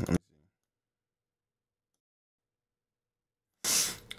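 The man's voice cuts off abruptly, then about three seconds of dead digital silence: the mic signal drops out entirely while the Neve 1073 preamp plugin that carries it is moved between tracks. A short breath-like hiss comes back near the end, just before speech resumes.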